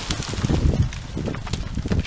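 A small six-inch tree crashing down out of vines through brush, with an irregular run of cracks and thuds as wood breaks and hits the ground.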